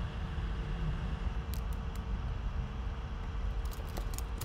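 Steady low background hum with a faint steady tone. A couple of isolated clicks come about a second and a half in, and a quick run of computer keyboard keystrokes follows near the end as typing starts.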